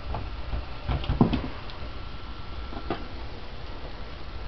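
A few short, soft knocks and thumps bunched together about a second in, the loudest near the middle of that cluster, then a single sharp click about three seconds in, over a low steady rumble.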